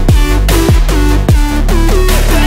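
Background electronic music with a heavy beat: deep kick-drum sweeps about every 0.6 s under short synth notes that slide down in pitch and then hold.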